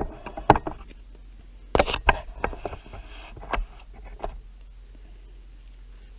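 Camera-handling noise: a run of sharp knocks and clicks on the microphone, the loudest about two seconds in, with a short rustle, as the camera is handled and repositioned. After about four seconds only a faint steady low hum is left.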